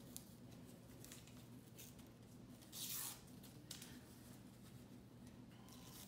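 Iron-on transfer paper being peeled off a T-shirt: faint crackling and rustling, with one louder ripping tear about three seconds in.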